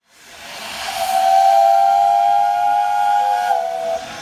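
A steam whistle blowing one long note over a hiss of steam. The hiss swells up from silence in the first second, the whistle then sounds steadily for about two and a half seconds, and it drops slightly in pitch just before it stops.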